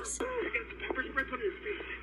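An officer's voice in police body-camera audio, muffled and thin-sounding, played back through a television speaker.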